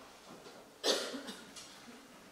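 A single cough from a member of the audience about a second in, sudden and short, in an otherwise hushed concert hall while the orchestra is silent.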